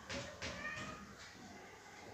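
A marker pen squeaking and scratching across a whiteboard as a word is written in short strokes, with a brief high squeak about half a second in.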